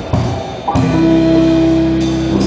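Live band playing an instrumental passage on guitars and drum kit. There is a sharp drum hit near the start, and from just under a second in, sustained notes ring on steadily.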